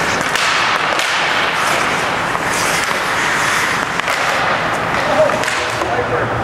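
Ice hockey play on an indoor rink: skate blades scraping across the ice, with several sharp clacks of sticks hitting the puck and the ice.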